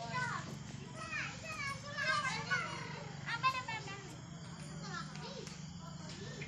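Children's voices, playing and calling out in short high-pitched shouts and chatter, over a steady low hum.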